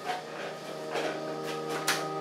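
Soft background music of held, sustained notes, with a few light percussive ticks.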